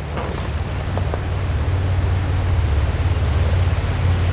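Rushing whitewater of a river rapid with wind on the microphone, a steady low rumble; a couple of faint paddle splashes in the first second or so.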